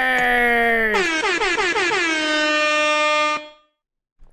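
A loud, long held horn-like tone with many overtones, sliding slightly down in pitch. About a second in, a wavering, warbling tone takes over, settles to one steady pitch and cuts off abruptly near the end.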